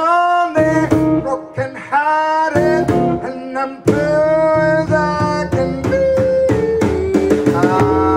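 Live jazz trio: a male vocalist sings long, bending notes, backed by an eight-string guitar that carries both the bass line and the chords, and by a drum kit.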